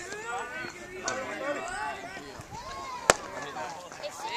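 One sharp smack about three seconds in: a pitched baseball striking the catcher's leather mitt, heard over voices talking.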